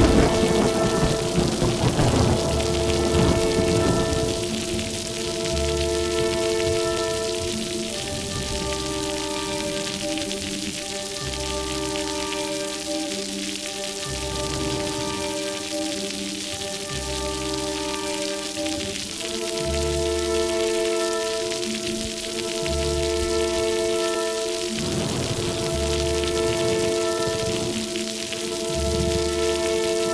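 Steady heavy rain, with a rumble of thunder at the start and another a little before the end, under slow music of held chords and deep bass notes.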